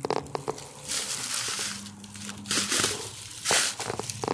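Footsteps crunching through dry leaf litter on a forest floor, about four steps roughly a second apart, the last the loudest.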